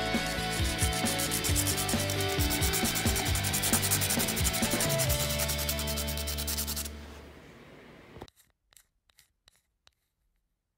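Pencil point rubbed back and forth on a sandpaper block in rapid, even strokes to sharpen the graphite, over background music. Both stop about seven seconds in, leaving a few faint ticks.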